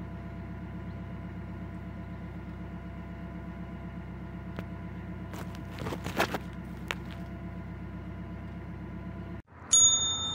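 Narrowboat's diesel engine running steadily at cruising speed. Around six seconds in, willow branches rustle and brush against the boat and microphone. Near the end the engine sound cuts off suddenly and a bright chime rings.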